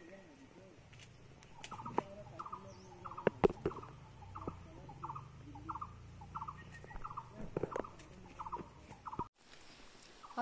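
A bird calling in a steady series of short notes, about two a second, over twigs snapping and leaves rustling as someone pushes through the branches of a lemon bush.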